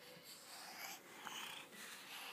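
A toddler's faint, breathy huffs and exhalations close to the microphone, voiceless rather than babbled.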